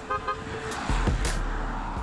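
A car driving along the road, its tyre and engine noise swelling about a second in, with a short toot at the very start.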